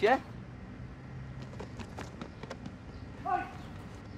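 Faint footsteps, a few light scattered steps, over a low steady street ambience between two shouted words.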